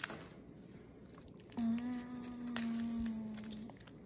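Crumbly plaster lumps being picked apart by hand, with a few faint clicks and crunches. In the middle a steady pitched tone of unclear source holds for about two seconds.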